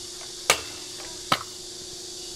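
Stunt scooter striking a round steel rail during a boardslide: two sharp metal knocks, the first about half a second in and the second under a second later.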